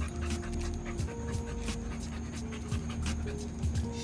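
A pit bull-type dog panting, over background music with long held notes.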